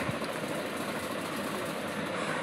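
Steady background noise with no distinct events, an even hiss-like hum.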